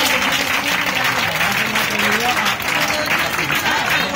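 Audience applauding steadily, a dense patter of many hands clapping, with faint voices underneath.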